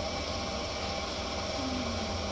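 Steady hum and whirr of an electric potter's wheel spinning, its motor running at an even speed while wet clay is shaped on it.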